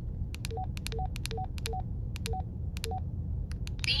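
Baofeng UV-5R handheld radio keypad being pressed to scroll through its menu. Each press gives a sharp plastic key click and a short two-note confirmation beep, low then high, about six times. A few clicks near the end have no beep.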